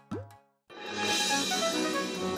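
A brief gliding sound, then a moment of silence, then background music starting about two-thirds of a second in with a bright, shimmering swell.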